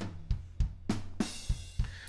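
Steinberg Groove Agent 5's sampled acoustic drum kit playing an 80s rock groove at maximum intensity and complexity: kick, snare, hi-hat and cymbals in a busy, even pattern of strikes.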